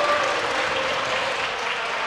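Applause from members of parliament, a steady clapping that eases slightly toward the end.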